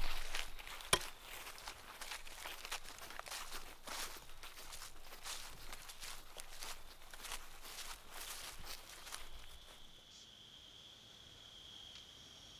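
Footsteps crunching through dry fallen leaves on a forest floor, an irregular run of crunches that stops about nine seconds in.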